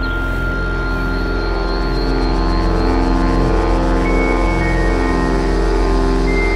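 Psychedelic ambient (psybient) electronic music: layered, long-held synth tones over a steady deep bass, growing slightly louder about two seconds in.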